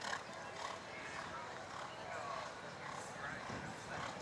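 Hoofbeats of a show-jumping horse cantering on sand arena footing, with indistinct voices in the background.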